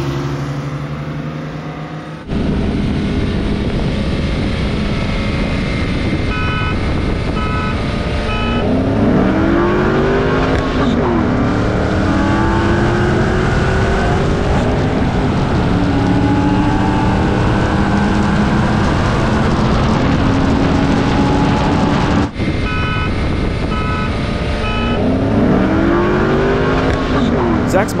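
A 2006 Porsche 911's 3.6-litre flat-six and a stock 2007 Mustang GT's 4.6 V8 accelerating hard side by side at wide-open throttle, the engine note repeatedly rising in pitch and dropping back at each upshift. Three short beeps sound before each of the two runs.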